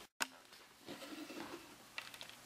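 Faint handling noise from work on the opened laptop: a brief dropout and a click near the start, then soft rustling and scraping, and another small click at the end.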